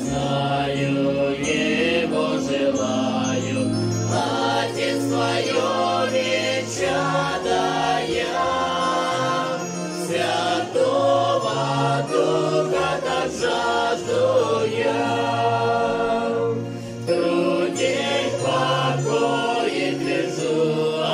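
A small mixed group of voices singing a Russian Protestant hymn together, accompanied by an electronic keyboard.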